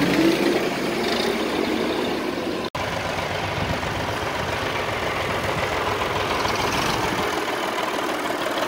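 A tractor's diesel engine running steadily close by. The sound cuts out for an instant a little under three seconds in.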